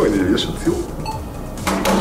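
A quick knock near the end as a hand slaps a tabletop quiz answer buzzer button, amid voices.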